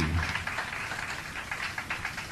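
Audience applauding, dying away slowly.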